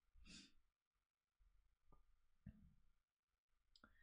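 Near silence: a faint breath out from a man about a quarter second in, then two soft clicks about two and two and a half seconds in.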